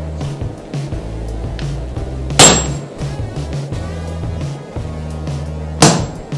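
Two sledgehammer blows on a handled forging tool set against hot steel, about three and a half seconds apart, each a sharp strike with a brief high ring. Background music with a steady beat plays underneath.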